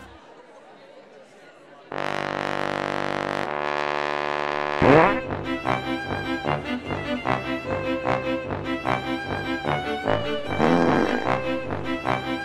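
Background music. After a quiet opening, two long held chords come in about two seconds in, then there is a quick upward swoop about five seconds in, followed by a bouncy rhythmic tune with a steady bass beat.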